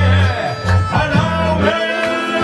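Diatonic accordion playing a mazurka tune with sustained notes over a human beatbox rhythm; the low bass drops out near the end.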